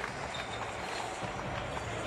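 Steady background ambience of a near-empty basketball arena: a low hum with a few faint scattered knocks.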